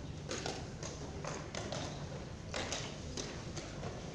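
Plastic chess pieces clacking down on boards and chess clock buttons being pressed during blitz play: short, irregular hollow knocks, several a second, over a steady low room hum.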